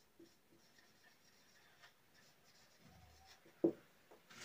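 Felt-tip marker writing on a whiteboard: faint scratchy strokes as a few words are written. One short, louder thump comes near the end.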